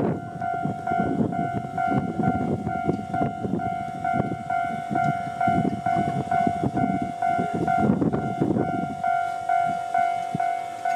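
A level crossing's warning bell ringing on and on in an even, pulsing beat, over the rumble and clicking of a Wakayama Electric Railway 2270-series electric train rolling in on the rails. The train's rumble dies away near the end as it slows for the station.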